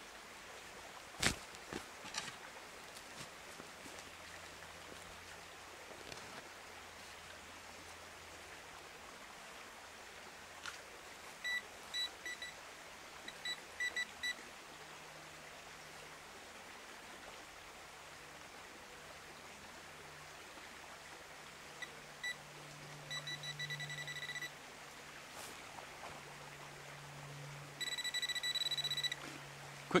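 A couple of sharp spade thuds cut into turf near the start. Later a Garrett Pro Pointer pinpointer beeps in short clusters that come quicker as it is probed through the loosened soil. Near the end it holds a steady tone for about a second and a half, signalling a target, which turns out to be rusty iron.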